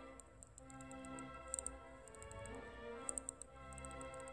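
Background orchestral music, with a quick run of sharp, high ticks from a Vostok 2409 hand-wound mechanical watch movement beating 19,800 times an hour.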